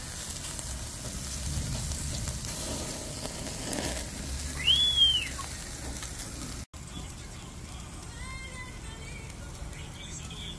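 Beef short ribs and pork ribs sizzling on a kettle grill grate over a wood fire: a steady hiss. A single brief high chirp rises and falls about halfway through.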